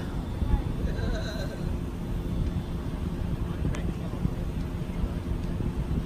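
Low, steady rumble of a vehicle engine running, with faint voices in the distance and a single sharp click partway through.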